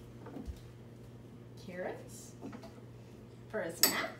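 Soft voice sounds, then a sharp clink of a spoon against a dish near the end, over a faint steady hum.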